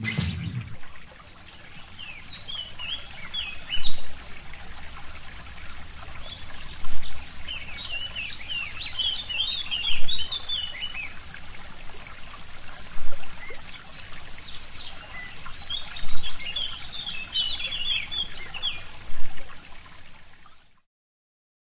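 Forest ambience: small birds chirping in bunches of quick rising and falling calls over a steady trickle of running water, with a low swell about every three seconds. A held musical chord dies away in the first second.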